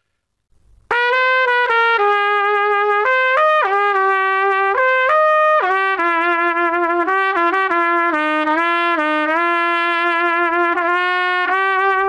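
Trumpet played open, without a mute, through a Denis Wick Heritage 3C mouthpiece: a simple, well-known melody in a smooth line of connected notes, starting about a second in.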